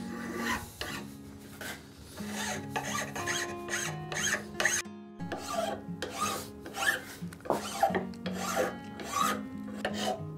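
A hand file rasping over a zebrawood plane tote in repeated short strokes, about two to three a second, with a brief pause about halfway through.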